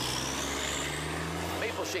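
Fire engine pulling away with its engine running loudly and a faint high whine rising over the first second and a half.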